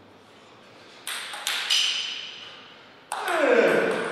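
Table tennis ball hitting the table and paddle: three sharp, briefly ringing clicks about a second in, then a louder hit about three seconds in as a rally starts.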